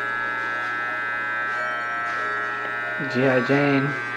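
Corded electric hair clippers buzzing steadily at an even pitch while cutting hair at the back of a man's head and neck.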